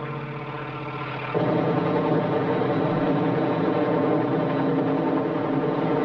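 A helicopter's engine and rotor running steadily, a mechanical drone that is quieter at first and steps up louder about a second and a half in.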